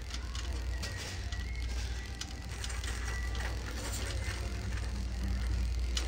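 Shopping cart rolling on a hard store floor: a steady low rumble with light rattling clicks from the wheels and the wire basket.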